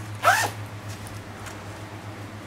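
A zipper on a canvas bag is pulled once quickly, giving a short rasp that rises in pitch about a quarter second in.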